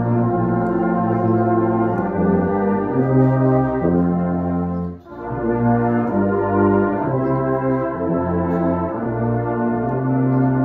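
Tuba played solo: a slow melody of sustained low notes moving from one to the next, with a short break for breath about five seconds in.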